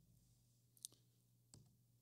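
Near silence with a faint low hum and two small faint clicks, the first a little under a second in and a weaker one about two-thirds of a second later.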